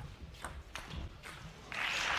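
Table tennis rally: the ball clicks sharply off bats and table, about four hits a third of a second or so apart. Near the end, applause breaks out as the rally ends.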